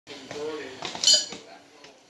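A voice in the background, then a brief, high metallic clink about a second in.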